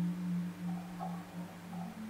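Soft ambient meditation background music: a single low drone tone held steadily, with faint higher tones above it.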